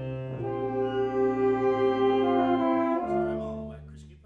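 Small instrumental ensemble playing sustained chords, swelling louder, moving to a new chord about three seconds in, then dying away at the end of the phrase.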